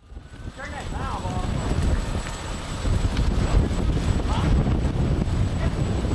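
Wind buffeting an outdoor camcorder microphone, an uneven low rumble that swells in after a moment of silence at the very start, with faint distant voices now and then.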